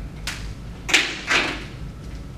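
Three short clacks of whiteboard markers being handled, about half a second apart, as a blue marker is exchanged for a black one.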